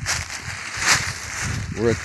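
Footsteps crunching and rustling through dry fallen leaves, with a louder rustle about a second in and a low rumble on the microphone; a man starts speaking near the end.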